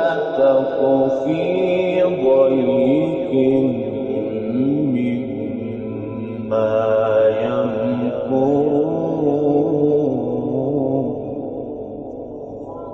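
Solo male Quran recitation in the melodic mujawwad style: long drawn-out phrases with ornamental turns of pitch, fading out about eleven seconds in.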